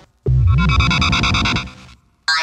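Short electronic music sample: a held synthesizer chord over a bass tone that swoops up and down several times. It starts after a brief silence, lasts about a second and a half, then fades out.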